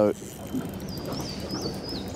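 Steady open-air water and wind noise around a small boat on a river, with a thin, high whistling tone wavering slightly from about a second in.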